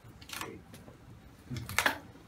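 Handling sounds of a handheld telescoping antenna being pulled out: two brief scraping sounds, the second louder, near the end.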